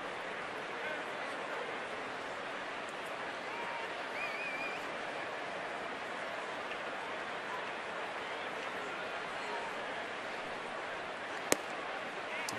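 Steady murmur of a ballpark crowd, with a few faint calls from individual fans. Near the end comes a single sharp pop: a 93 mph fastball hitting the catcher's mitt for a called strike.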